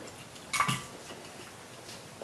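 A short clink about half a second in, and a fainter click near the end, as a hard stick-bait fishing lure and its hook hardware are handled.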